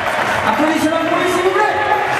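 A man talking over an arena's public address system.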